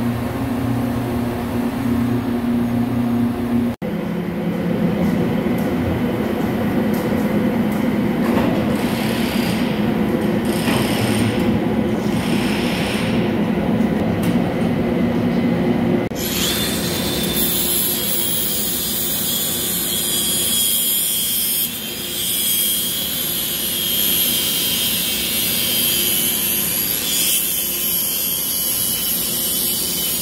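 Large CNC lathe's boring tool cutting the bore of a heavy steel workpiece: a steady machine drone that changes abruptly about four seconds in. From about halfway, a handheld grinder runs with a high-pitched hissing whine, deburring the steel edge and throwing sparks.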